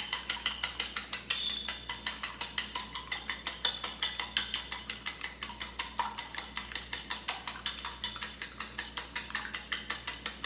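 Raw eggs being whisked in a glass bowl: the utensil clicks against the glass in a steady, quick rhythm of about six strokes a second.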